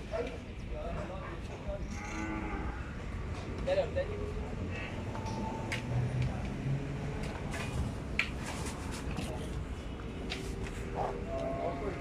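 Cattle mooing: a low, drawn-out moo lasting over a second a little after the middle, and higher calls near the end, with scattered knocks between.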